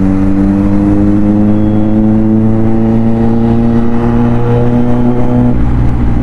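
Kawasaki Z900's 948 cc inline-four engine pulling under throttle, its note rising steadily as the bike accelerates through a gear, then dropping about five and a half seconds in.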